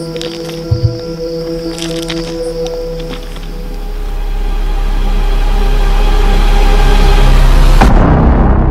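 Dark ambient film-score music: sustained droning tones with two low thumps about a second in, then a deep rumble that swells steadily louder over the second half and breaks in a sharp hit near the end.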